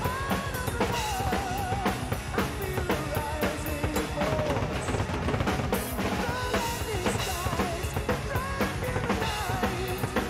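Acoustic drum kit played fast and hard, with dense bass drum, snare and cymbal hits and many small ghost notes in between. It plays along to a backing track with a wavering lead melody.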